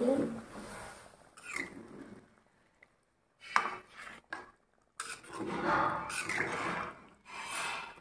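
Flat metal spatula stirring and scraping through watery fish curry in a metal kadhai, in several short bursts with brief pauses between them.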